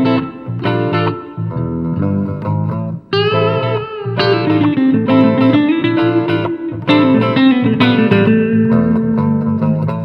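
Electric guitar trio playing a Latin jazz instrumental. The lead electric guitar plays a melody with bending, gliding notes and long held lines over a second electric guitar and a steady electric bass line.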